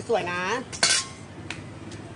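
Cutlery and dishes clattering: one sharp, loud clatter about a second in, followed by two lighter clicks.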